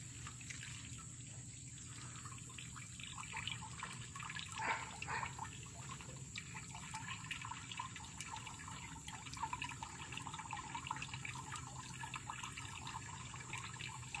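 Pear juice trickling and dripping out of an old wooden screw-type cider press as the pear pulp is squeezed, a faint, irregular trickle and patter.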